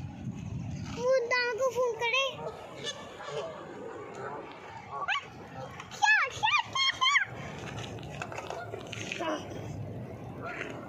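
A young child calling out in a high voice: a run of short calls about a second in, then a few rising squeals around six seconds in.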